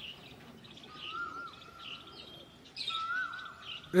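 Birds chirping faintly in the background, with a whistled call held briefly then dropping in pitch, heard twice.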